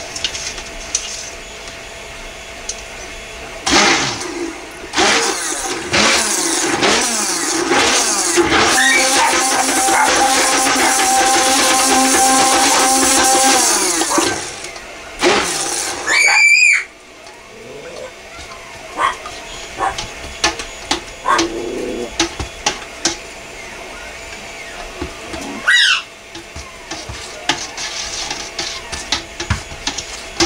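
Stick blender running in a stainless steel pot of oils and lye solution, mixing cold-process soap batter: the motor runs steadily for about ten seconds from a few seconds in, then gives way to short clicks and knocks against the pot. A military macaw squawks briefly about sixteen seconds in and again near the end.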